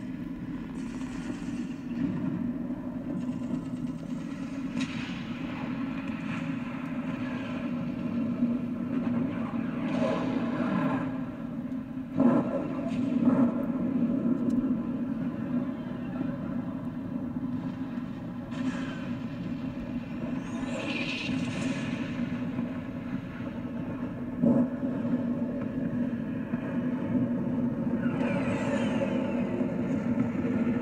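A steady low mechanical rumble runs throughout, with a few sweeping whooshes and sharp heavy thuds about twelve, thirteen and twenty-four seconds in. It sounds like an added battle sound-effects bed.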